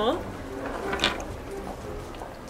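A small glass jar rolling along a hard, smooth floor, with one light clink about a second in as it knocks to a stop.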